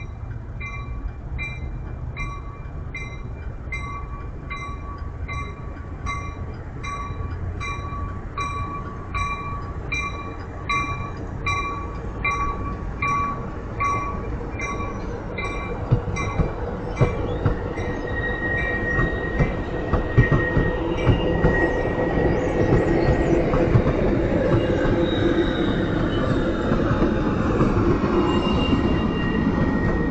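Amtrak bilevel passenger train passing through the station. A bell rings about twice a second as the locomotive comes by and fades out about halfway through. It gives way to the rumble and clacking of the passing cars and wheel squeal near the end.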